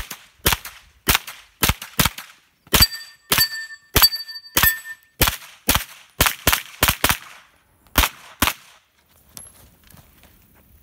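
AR-style semi-automatic rifle firing a rapid string of single shots, about two a second, with a pause near the end. Steel targets ring after hits in the middle of the string.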